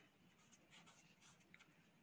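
Near silence with the faint scratch of a felt-tip marker writing on paper.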